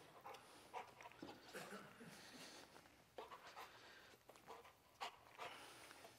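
Dog panting faintly, a few short, irregular breaths over near silence.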